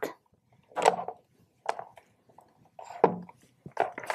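About four short handling noises, little knocks and rustles of a cable and its connectors being picked up and sorted.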